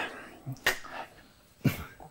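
Two sharp clicks about a second apart, the second louder.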